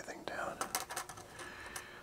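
Light clicks and taps of a small electronics module and parts being handled and set down on a perforated protoboard, with a faint whispered mutter.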